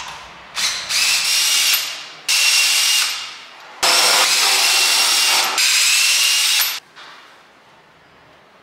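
A power tool or air/water jet running in several bursts of one to two seconds each: a loud hiss with a steady high whine in it, starting and stopping abruptly.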